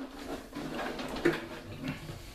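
Water sloshing with a few short gurgles as a large plastic toy hovercraft is set into a tub of water and steadied by hand.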